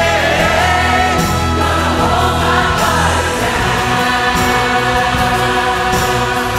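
Worship song: a woman sings lead with a choir, over an orchestra and band accompaniment.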